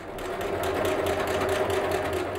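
Domestic electric sewing machine running steadily, its needle stitching fabric in a fast, even rhythm. The sound builds up over the first half second.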